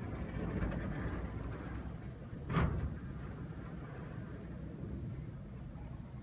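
Tall wooden wall panels sliding open on their track with a low rolling rumble, then a sharp knock about two and a half seconds in as a panel meets its stop.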